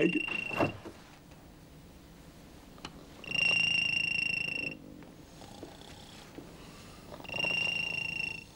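A telephone ringing unanswered with a steady electronic tone. One ring ends just after the start, a full ring of about a second and a half comes in the middle, and another starts near the end, with pauses of about two and a half seconds between them.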